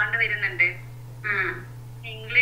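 A person speaking over a video call, the voice thin and telephone-like, with a steady low hum underneath.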